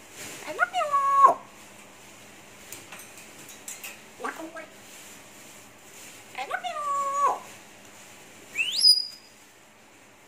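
African grey parrot vocalizing: two similar drawn-out, speech-like calls, one near the start and one a little past the middle, with a short call between them, then a quick rising whistle near the end.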